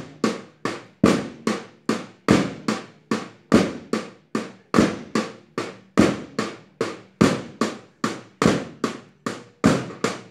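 A steady percussion beat keeping time for a group drill: sharp struck beats in a repeating pattern, one stronger beat about every 1.2 seconds with two lighter strikes between.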